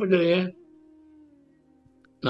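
A voice chanting a drawn-out, wavering phrase that ends about half a second in, followed by a faint, slowly falling tone.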